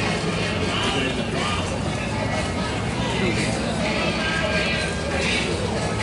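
Indistinct voices of people talking nearby, with faint music and a steady low hum underneath.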